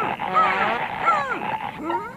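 Cartoon hippo character's voice whimpering in short, repeated arching and falling cries, about two a second.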